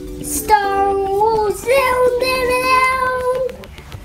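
A young child singing, holding long, steady notes, the last one held for well over a second before it stops near the end.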